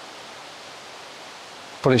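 Steady, even rushing hiss of outdoor ambience with no distinct events in it.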